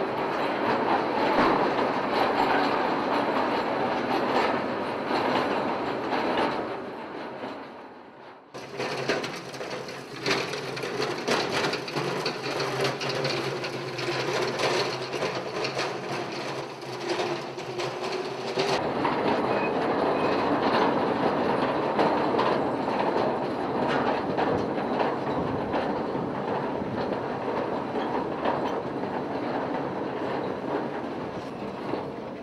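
Mine cars rolling on narrow-gauge rails: a dense, steady metallic rattling and clatter of wheels on track, with a faint wavering squeal in the middle stretch. The sound breaks off abruptly about eight seconds in and again near nineteen seconds, each time going straight into another stretch of the same rattling.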